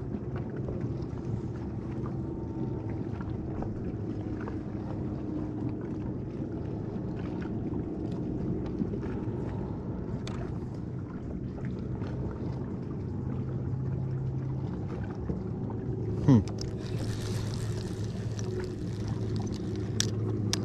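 Steady low hum of a bow-mounted trolling motor holding the boat in place. About sixteen seconds in comes a sharp knock with a short falling whine, then a brief hiss.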